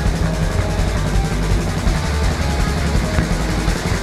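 Punk rock band playing live: distorted electric guitar, bass and drums in a loud, dense instrumental passage without vocals.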